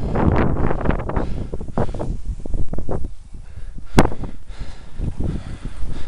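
Wind buffeting the microphone of a camera on a moving bicycle, in uneven gusts, with a single sharp click about four seconds in.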